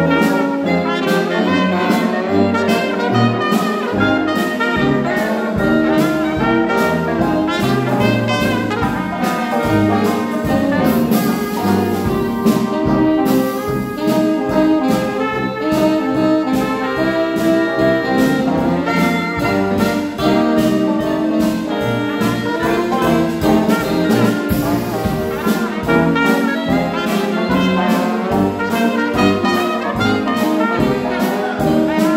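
Dixieland jazz band playing live: trumpet, clarinet and trombone weave melody lines over alto saxophone, with a drum kit and brass bass keeping a steady beat.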